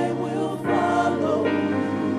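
Gospel vocal group singing in harmony, several voices at once, over steady low bass notes that change about two-thirds of a second in.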